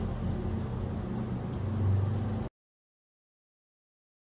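A low, steady hum with faint background noise that cuts off abruptly to complete silence about two and a half seconds in.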